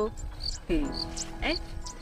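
Insects chirping outdoors in a steady repeating rhythm, about two short high chirps a second.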